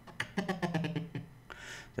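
Audio scrubbing in a video editor: a man's recorded voice from an interview clip played back in rapid, stuttering repeated fragments as the playhead is dragged slowly across it. It turns fainter after about a second, in the pause after his word "okay".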